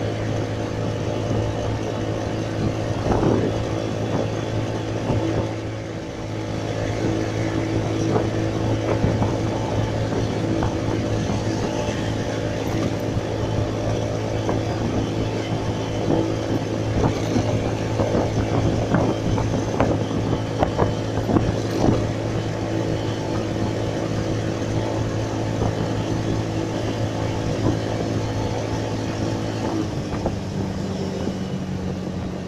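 Motorcycle engine running steadily at cruising speed, with road and wind noise from riding. A run of short bumps and knocks comes through in the middle stretch.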